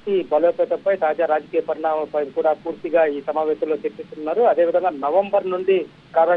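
Speech only: a news correspondent talking in Telugu over a phone line, the voice narrow and cut off above about 4 kHz like telephone audio.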